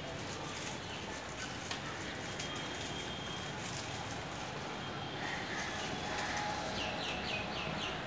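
Steady background hum with faint scattered clicks, then near the end a bird's quick series of about five short high notes.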